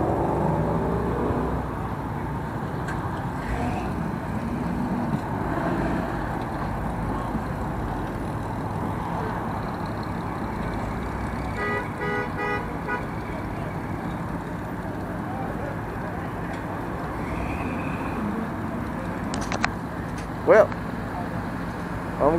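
Car engines rumbling low and steady at parking-lot speed. About halfway through comes a short rapid string of horn toots, and near the end a single brief loud sharp sound.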